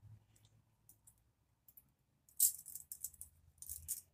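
Metal U-pins (hair forks) clinking and rattling together as they are handled, a quick run of light jingling clicks starting about two seconds in.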